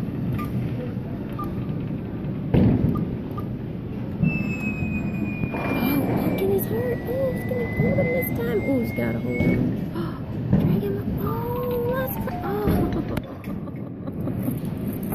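Busy arcade din: a steady wash of game-machine noise with background voices. A long, held electronic tone sounds in the middle, stepped electronic beeps come near the end, and there are two dull thumps, one a few seconds in and one near the end.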